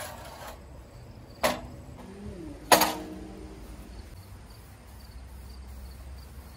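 Two sharp metallic clanks against a steel I-beam, about a second apart and the second louder, each leaving a brief ring in the steel.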